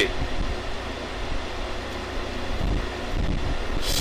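A man taking a drag on a joint and breathing the smoke out, heard as a steady rush of breath with a few low rumbles against the microphone about two and a half to three seconds in, over a steady low background hum.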